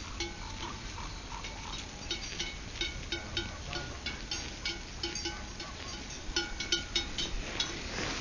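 Flock of sheep grazing: many small crisp clicks and crunches from the animals cropping grass and stepping on the frosty ground, with short clinks of bells that recur at the same few pitches. The clicks grow denser and louder about six seconds in.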